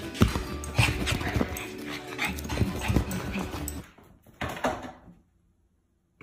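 A dog barking repeatedly over background music, the barks stopping near the end.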